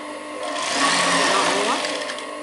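Industrial single-needle sewing machine running in one short burst, starting about half a second in and stopping near the end, as it stitches knit fabric.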